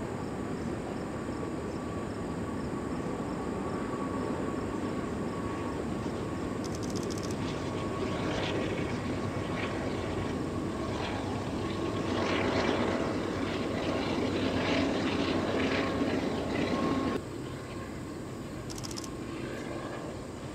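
Freight train's loaded hopper cars rolling across a steel trestle bridge: a steady rumble with a faint held squeal, and a cluster of clanks and wheel squeals in the middle. The sound drops off abruptly about three-quarters of the way through.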